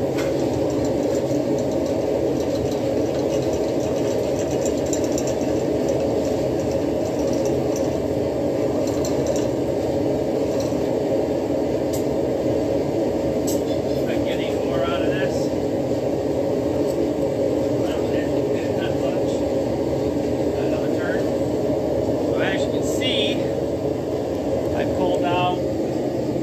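Steady drone of shop machinery. Short metal squeaks and scrapes come a few times in the second half as a steel coil spring is drawn off a rod and pulled out into straight wire.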